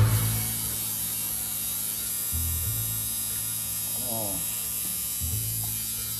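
Electric tattoo machine buzzing steadily while it works on skin. Its pitch drops briefly twice, about two and a half seconds in and again a little after five seconds.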